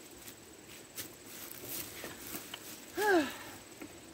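Faint footsteps and shuffling on dry leaf litter as a woman steps to a bench and sits down, with a sharp click about a second in. About three seconds in she makes a short vocal sound that rises then falls in pitch.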